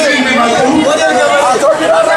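A man speaking loudly into a microphone, with chatter from the crowd around him.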